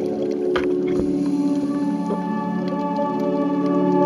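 Ambient background music: a steady held chord of sustained tones with no beat.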